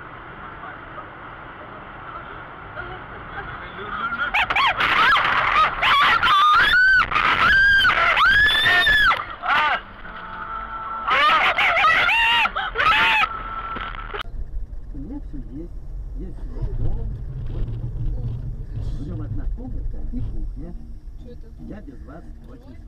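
Repeated loud, rising-and-falling cries from people inside a car as it slides off a snowy road, in two spells a few seconds apart, over steady in-car road noise; afterwards a lower rumble of car noise.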